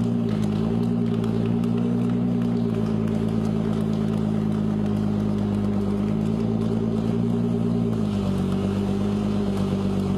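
Ford GT's twin-turbo 3.5-litre EcoBoost V6 running steadily at low revs as the car rolls slowly across the floor, its note dropping slightly about eight seconds in.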